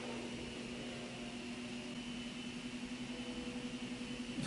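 Steady low hum with a faint hiss: the background noise of a small room.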